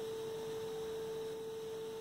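A faint, steady hum at one pitch, with quiet room tone and no other event.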